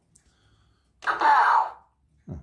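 A Lightning McQueen sound toy's small speaker gives a short, loud, distorted sound effect a second in, lasting under a second. Its batteries are running down.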